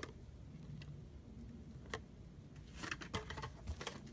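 Faint clicks and rustles of a carded Hot Wheels car's plastic blister pack being handled. There is a single click about two seconds in and a short cluster of clicks near the end.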